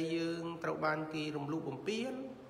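A man's voice speaking in a slow, intoned delivery, each phrase held on a steady pitch so that it comes close to chanting.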